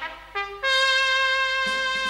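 Instrumental band music between sung verses: a short note, then a long steady held note from a wind instrument, with a rhythmic accompaniment coming in near the end.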